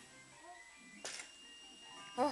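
Faint electronic jingle from a baby's musical light-up toy, with a short click or knock about a second in.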